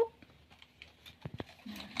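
A few light clicks and taps of plastic parts being handled on a ring-light and phone-holder mount, clustered about a second in.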